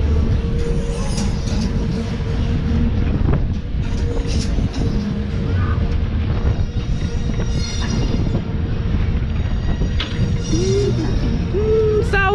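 Funfair ride's music jingles playing over a loud, steady low rumble from the moving ride and wind on the microphone.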